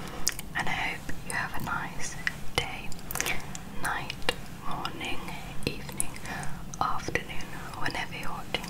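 Close-miked ASMR mouth sounds: soft breathy whispering broken up by many sharp, wet mouth clicks and pops, right at the microphone.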